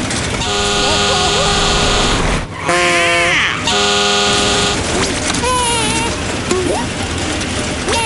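A horn sounding in two long, steady blasts, the first lasting about two seconds and the second about one second, with a cartoon character's wavering vocal cry between them. Short cartoon vocal cries follow in the second half.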